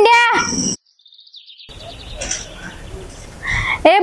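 A woman calling a boy's name loudly, once at the start and again near the end. Between the calls the sound cuts out abruptly for about a second, and during that gap comes a short, faint, high-pitched trill of quick pulses, under a second long, with outdoor background after it.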